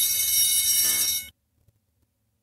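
School bell ringing, which cuts off abruptly just over a second in.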